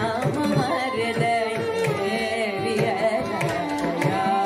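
Carnatic kriti in raga Reetigowla: a woman singing with gliding, ornamented phrases, shadowed by two violins, over a steady run of mridangam strokes.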